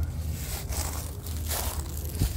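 Footsteps crunching and rustling through a layer of dry fallen leaves, a few separate crunches.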